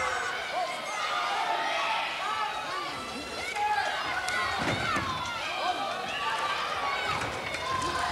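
Wrestling crowd shouting and yelling, many voices at once, some high-pitched, with one dull thud a little past halfway.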